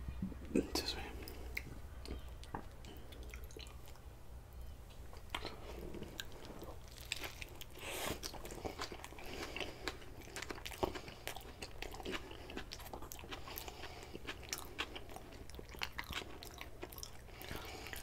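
Close-up chewing of a mouthful of sushi burrito (nori-wrapped rice, raw fish and vegetables), with many small irregular mouth clicks and smacks. A steady low hum runs underneath.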